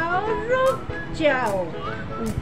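A woman's voice in drawn-out, sing-song calls that glide up and down in pitch, over background music.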